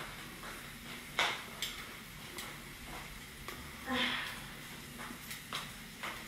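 Faint sizzle of garlic and tofu frying in a pan on a gas burner, with a few light knocks and clatters of kitchen things being handled and a brief murmur of voice about four seconds in.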